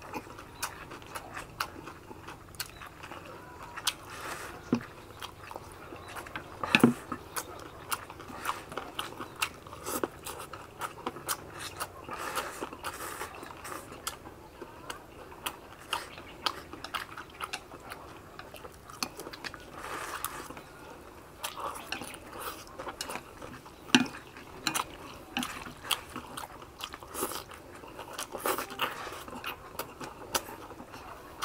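Close-up eating sounds of two people wolfing down rice vermicelli and roast pork: biting, chewing and crunching, with frequent short clicks and clatters. Two louder knocks stand out, about seven seconds in and about two-thirds of the way through.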